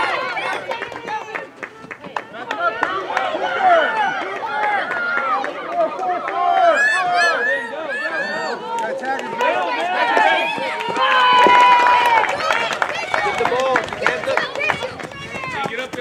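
Many voices shouting and cheering over one another: young players, coaches and onlookers calling out during a live play. About eleven seconds in, one voice holds a long, steady shout.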